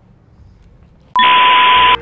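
A loud electronic beep, a single steady high tone lasting just under a second. It starts about a second in and cuts off suddenly.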